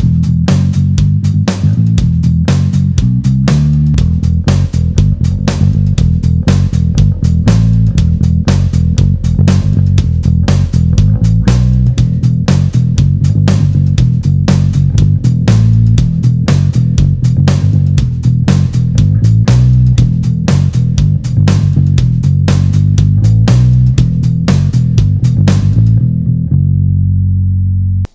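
Electric bass guitar played solo with a clean tone, a busy run of plucked notes, heard through an Aguilar DB 2x10 cabinet miked with an sE VR1 ribbon mic and blended with an Origin Effects BassRig Super Vintage DI. It ends on a held note that rings out near the end.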